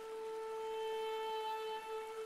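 Traditional Japanese instrumental music: one long, steady held note with bright overtones, swelling slightly about half a second in.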